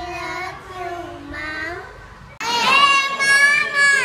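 Voice singing with no backing beat. About two and a half seconds in, it cuts suddenly to a child singing loudly in a high voice.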